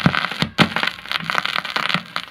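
Turntable stylus riding the lead-in groove of a worn, stained 45 rpm vinyl single: steady surface crackle with several sharp pops.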